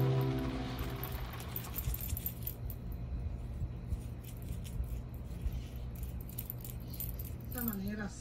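A paintbrush working thick acrylic paint on a palette: faint, quick sticky clicks and taps over a low steady hum. Guitar music fades out in the first second.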